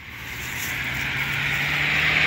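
A car approaching along the road, its tyre and engine noise growing steadily louder as it nears.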